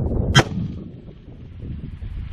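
A single rifle shot from a 6.5 Grendel AR-15, about half a second in, with its echo fading over the next second. Wind rumbles on the microphone.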